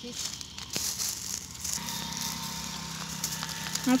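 Dry twigs and cut branches rustling and crackling with small snaps as someone moves through and handles a pile of brushwood.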